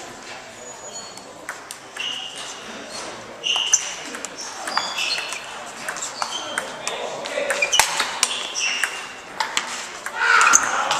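Table tennis balls clicking off bats and tables, with many short high pings and clicks scattered through, thicker in the second half, over a background of voices.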